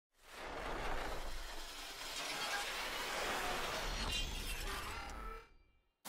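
Channel intro sound effect: a dense wash of noise over a low rumble, with a few short electronic tones near the end, fading out just before the end.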